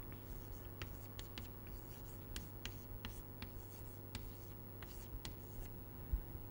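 Chalk writing on a blackboard: faint, irregular taps and scratches as an equation is chalked up.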